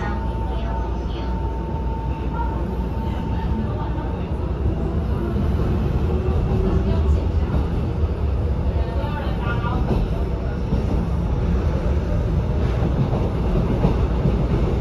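EMU700 electric commuter train pulling out of an underground station, heard from inside the car: running noise that grows louder as it gathers speed, with a steady whine in the first few seconds.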